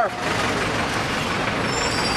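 Steady road traffic noise, with faint thin high tones near the end.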